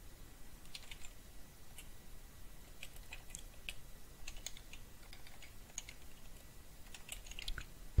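Typing on a computer keyboard: quiet, irregular keystrokes as a line of code is entered.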